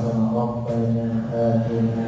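A man chanting a prayer into a microphone, heard over a loudspeaker, in long held melodic notes.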